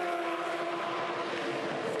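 Supercars Holden ZB Commodore race car's 5.0-litre V8 engine running at high revs under way. It holds one steady note that eases slightly lower in pitch.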